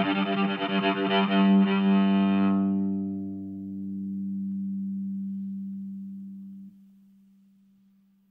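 Six-string electric cello, bowed and amplified: a busy passage of many notes thins out after a couple of seconds into one long held low note. The note swells and then stops abruptly about two-thirds of the way through, leaving a faint fading tone.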